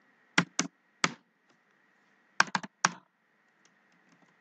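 Computer keyboard keys being typed: a handful of separate keystroke clicks in two short groups, three in the first second and four more around two and a half to three seconds in.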